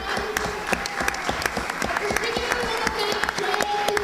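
Audience applauding, a dense patter of hand claps.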